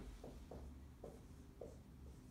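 Dry-erase marker writing on a whiteboard: a few faint, short strokes.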